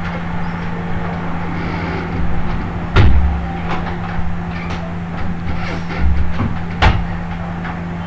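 A steady low hum under room noise, with two sharp knocks, about three and seven seconds in, and a couple of brief low thuds.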